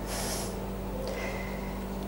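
A short intake of breath at the start, then steady low room hum.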